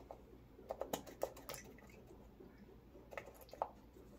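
Faint plastic clicks and taps of a cosmetic pump bottle being handled and pumped: a cluster of short clicks in the first second and a half, then a couple more past three seconds.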